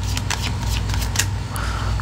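A deck of tarot cards being shuffled by hand: a quick string of light papery card snaps and clicks.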